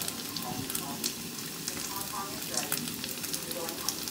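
Food sizzling in a hot frying pan: a steady hiss with scattered small crackles and pops.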